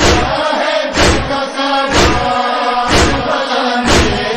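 Voices chanting a noha lament in a held, unworded refrain, kept in time by a heavy thump about once a second.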